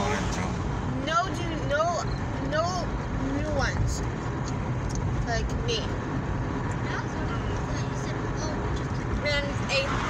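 Steady road and engine noise heard inside a moving car, with short bits of voice over it in the first few seconds and near the end.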